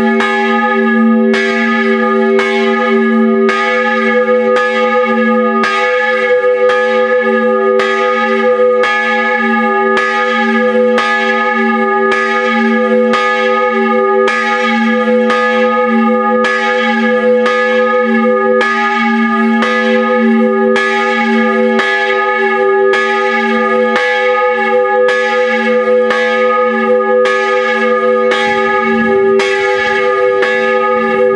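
Large bronze church bell swinging high under an electric motor drive, rung a distesa. Its clapper strikes in a steady, even rhythm and each stroke rings on into the next, with a strong low hum under the higher partials.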